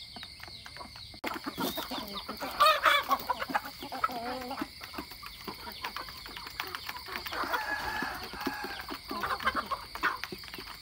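A flock of hens and roosters clucking and calling as they feed, with many short clicks in between. It grows louder a little over a second in, and the loudest call comes at about two and a half to three seconds.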